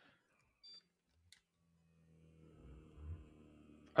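Therabody SmartGoggles switched on: a short electronic beep and a click, then, from about two seconds in, the faint low hum of the goggles' small air pump building pressure, like a blood-pressure cuff inflating.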